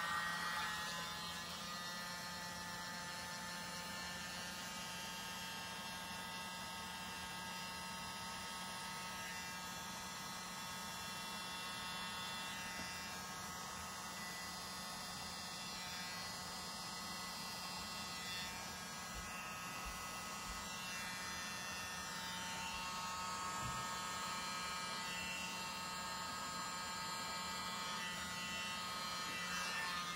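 Small electric motor of a paint-pouring spinner turning the canvas, giving a steady hum with a buzzing edge.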